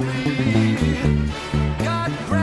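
Electric bass playing a line of short, stepped notes, several a second, along with a band recording. Higher held and sliding tones from the band sit above it, including a falling slide about half a second in.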